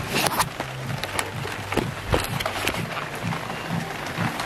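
Background music with a steady beat over the even hiss of heavy rain.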